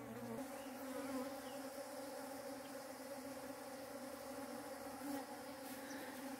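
Many bees buzzing together in a steady, even hum.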